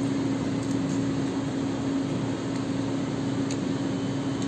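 Steady mechanical hum: an even hiss with one constant low droning tone.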